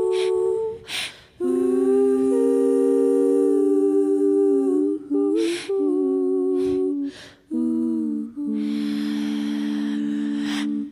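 Three women's voices humming a wordless close-harmony passage, unaccompanied. Long chords are held in three parts, with audible breaths between phrases. The final chord is sustained from about eight and a half seconds in.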